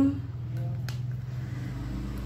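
A metal spoon scooping thick sambal out of a glass jar onto a plate of rice, with one short click a little under a second in, over a steady low hum.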